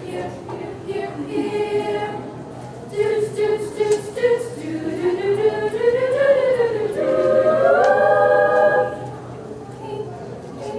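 A women's choir singing a cappella, the voices rising to a loud held chord that breaks off about a second before the end.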